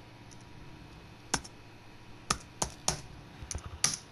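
Keys clicking on a Lenovo S10-3t netbook keyboard as a password is typed in: about seven separate keystrokes, starting about a second in and coming closer together near the end.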